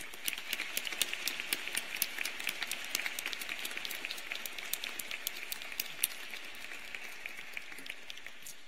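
Audience applause, many hands clapping steadily and thinning out near the end.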